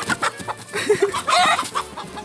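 Domestic chickens clucking as they are chased, with a louder pitched squawk from one bird about a second and a half in.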